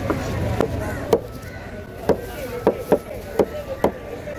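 A heavy curved cleaver chopping emperor fish flesh into chunks on a wooden block: about eight sharp knocks at an uneven pace.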